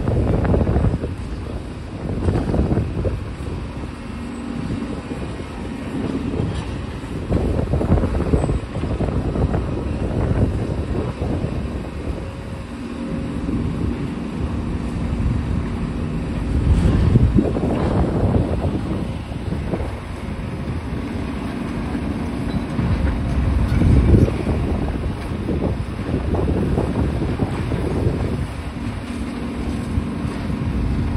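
Demolition excavators working on a building: a low diesel engine rumble that swells and eases every few seconds, with a steady engine hum at times. Wind buffets the microphone throughout.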